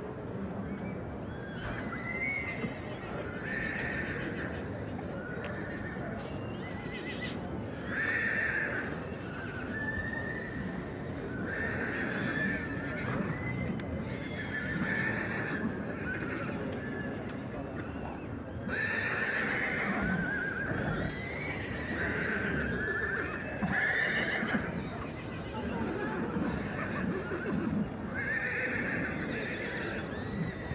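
Horses whinnying again and again, short wavering calls every second or two over a steady background noise.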